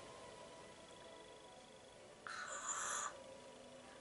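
Mostly quiet room tone with a faint steady hum. A bit over two seconds in comes one short breath, a soft hiss lasting under a second.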